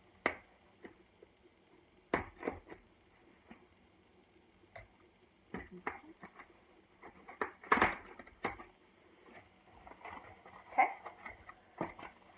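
A cardboard box being opened by hand: scattered taps, scrapes and rustles of the flaps and packing, the loudest about eight seconds in.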